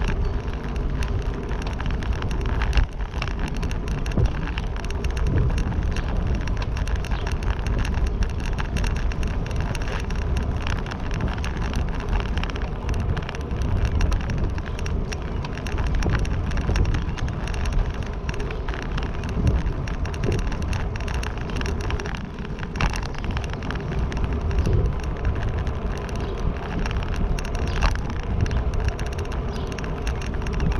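Steady rumbling ride noise with many small rattles and clicks throughout, from a vehicle moving over the spillway.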